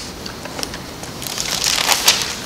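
Paper pages rustling and crackling as a book is leafed through, with the rustle growing louder near the end.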